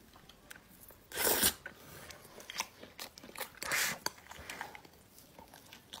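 Close-miked mouth sounds of eating ba zi rou, soft braised pork belly strips: sucking a piece in and chewing, with wet clicks and two louder noisy bursts, about a second in and just before four seconds.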